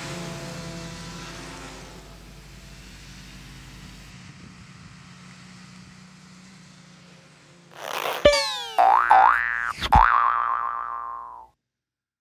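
The tail of banjo music fades away, then after a faint hum comes a short cartoon-like sound-effect sting: a whoosh and a sharp click, then springy tones sliding up and down a few times and dying away.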